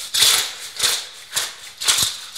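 Mussels in their shells rattling against a steel pan as it is tossed on the stove: a short clatter about twice a second.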